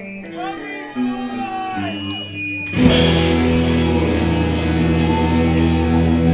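Rock band playing live: sparse electric guitar notes, some bending in pitch, then about three seconds in the full band crashes in with drums and guitars and the music gets much louder, cymbals keeping a steady beat.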